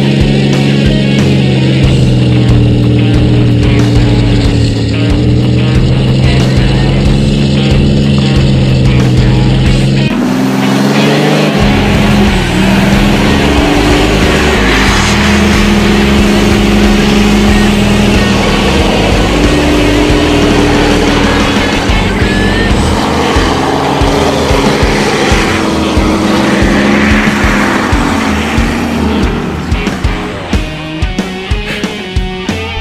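Diesel pickup trucks running hard under load, as one tows a stuck truck out of snow on a chain, with music mixed in. About ten seconds in, the sound changes suddenly to a rougher, noisier mix of engine revving and wheel spin.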